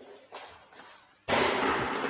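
A faint short knock about a third of a second in, then a sudden thump and about a second of steady rubbing, scraping noise from an object being handled against the writing surface.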